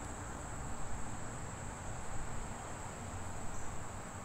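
Crickets trilling in one continuous high-pitched drone over a soft, even hiss of outdoor night ambience.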